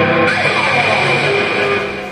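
Rock backing track with electric guitar at the end of a song: held chords give way to notes sliding down in pitch, and the music begins to fade out near the end.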